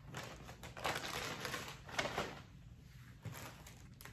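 Clear plastic bags crinkling and rustling as supplies are pulled out of them and set on a table, in short bursts, loudest about one and two seconds in.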